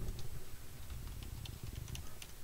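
Computer keyboard typing: a run of light key clicks as a word is typed, over a low background rumble.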